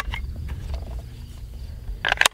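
Low steady outdoor rumble with a few faint metallic clicks as a Smith & Wesson M&P 15-22 pistol is handled; one sharp click comes right at the start.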